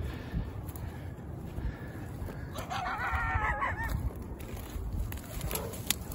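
A coyote's high, wavering call, about a second long, comes near the middle over low rustling from movement through dry brush.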